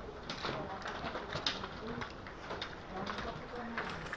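A bird cooing in a few low, short coos, over sharp taps of footsteps and trekking poles on a paved lane.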